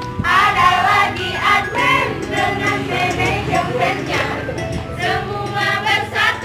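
A group of voices singing a yel-yel cheer song together, loud and without a break.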